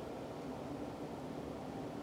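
Steady low background hum and hiss: room tone.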